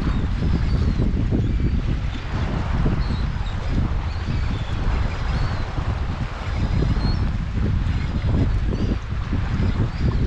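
Strong wind buffeting the microphone, a heavy, steady low rumble that swells and eases with the gusts. Faint, short high calls from the flock of seabirds over the water come through it again and again.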